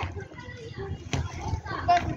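Children's voices calling out as they play in the street, with a short sharp knock about a second in.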